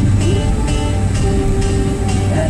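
Pop music with a steady beat, about two beats a second, playing on a car stereo inside a moving car, with a low engine and road hum beneath it.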